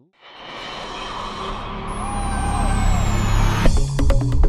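A rising whoosh transition effect: a swell of noise that builds steadily in loudness over about three and a half seconds, with a thin whistle falling in pitch near the top. It breaks into an electronic music track with a beat near the end.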